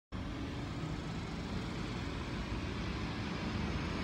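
Steady outdoor background noise with a low, uneven rumble and no distinct events.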